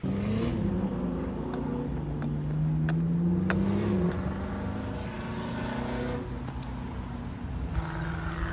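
A car engine accelerating, its note rising steadily for a couple of seconds and then dropping about halfway through, over a continuous low rumble.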